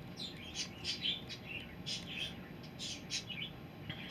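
Small birds chirping in short, quick calls, several overlapping, densest about a second in and again near three seconds, over a faint steady low background noise.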